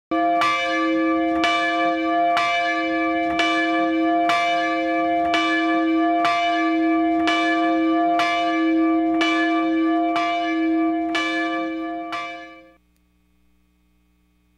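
A bell tolled at about one stroke a second, about a dozen even strokes on the same note, each ringing on into the next. The tolling stops about 13 seconds in.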